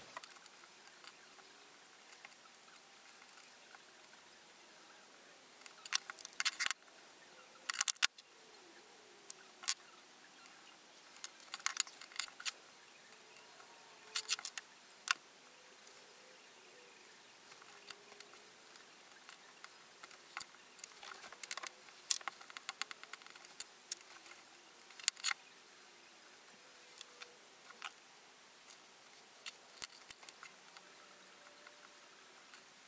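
Sparse light clicks and taps of small makeup tools and a tube being picked up and set down on a wooden tabletop, coming in short clusters every few seconds over quiet room tone.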